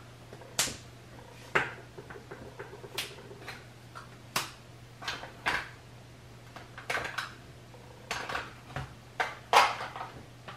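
Makeup containers and tools clicking and knocking as they are handled and put away: about a dozen light, irregular taps and clicks, over a low steady hum.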